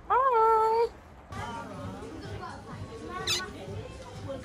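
A short, high-pitched held voice sound, rising at first and then steady, lasting under a second at the start. Then indoor shop background with faint voices and a single click.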